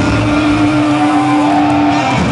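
Heavy metal band playing live and loud, with one note held steady over the dense band sound.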